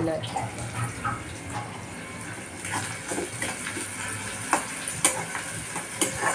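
Food frying in a pan on an induction cooktop, a steady sizzle, with a few sharp clinks of a utensil on metal in the second half.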